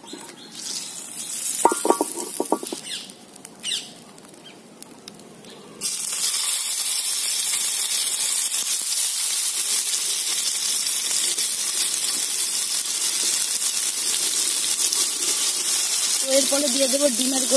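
Tomato rings frying in hot oil in a frying pan: a steady sizzle starts suddenly about six seconds in and keeps going. Before it, only the faint sound of the oil heating.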